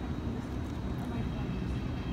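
Steady low rumble of city street background noise.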